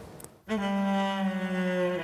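Bowed cello enters about half a second in with a long, steady held low note, another held note sounding above it, as the band's song begins.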